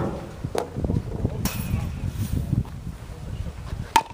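A pitched baseball struck by a metal youth bat: one sharp crack with a short ring, near the end, over a low rumble.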